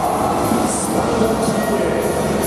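Stadium public-address sound in a domed ballpark: a steady, loud wash of music and sound effects accompanying a player-introduction video on the scoreboard.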